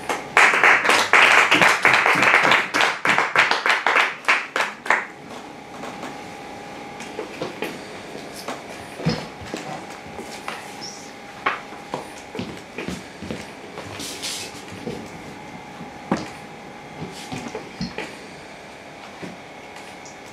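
Audience applauding for about five seconds at the end of a poem, dying away into scattered knocks and footsteps as people move about, over a faint steady tone.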